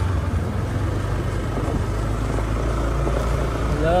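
A motor scooter's engine running steadily at low speed on a dirt track: a continuous low drone with road noise over it.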